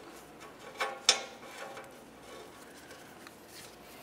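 Faint handling and rubbing as a new downstream oxygen sensor is turned into the exhaust pipe by hand, with two light metallic clicks about a second in.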